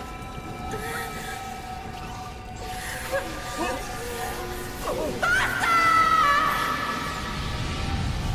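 Horror film score of sustained, steady tones, with a person's wordless cry rising about five seconds in and held as the loudest sound.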